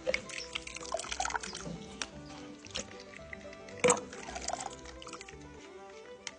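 Soft background music with faint drips and small splashes of whey as cheese curds are scooped out of a pot with a plastic strainer, and one sharper tap about four seconds in.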